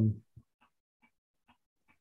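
The tail of a man's drawn-out hesitation 'um', cut off about a quarter second in. It is followed by near silence with a short click and a few very faint ticks about half a second apart.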